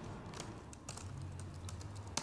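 Typing on a laptop keyboard: light, irregular key clicks, faint over a low steady hum.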